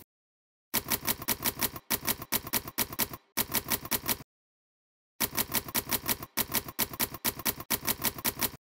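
Manual typewriter keys striking in quick succession, about six keystrokes a second, in two runs separated by a pause of about a second.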